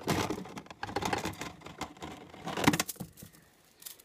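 Plastic toys clattering and rustling as hands rummage through a toy box, irregular clicks and knocks with one sharper knock a little before three seconds in, then quieter.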